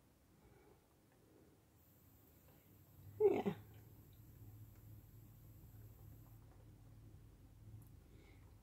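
A single short voice-like call, falling in pitch, about three seconds in, then a faint steady low hum.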